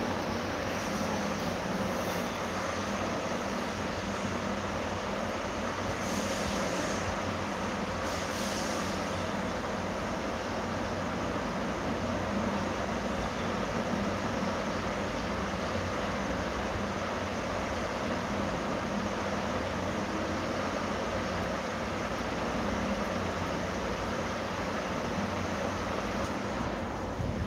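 Steady background noise: an even hiss with a low hum under it, holding level, with no distinct events.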